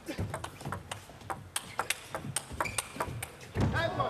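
Table tennis rally: the plastic ball clicking sharply off the players' bats and the table in quick, irregular succession.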